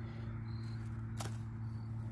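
One quick scrape of a striker across a ferro-rod sparker about a second in, which doesn't light the fire cube, over a steady low hum and faint short high-pitched chirps.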